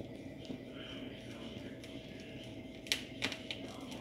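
Faint steady hiss of a lit gas stove burner while raw chicken pieces are singed over the flame, with a couple of light clicks about three seconds in.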